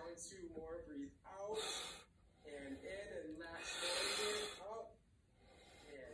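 A man's voice, low and half-spoken, broken by two loud breathy exhalations: a short one about a second and a half in, and a longer one around four seconds in.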